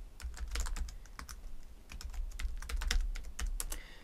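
Typing on a computer keyboard: irregular key clicks in quick runs, over a low steady hum.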